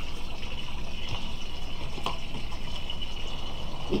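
Oracle cards being shuffled by hand: a few soft card clicks over a steady background hiss.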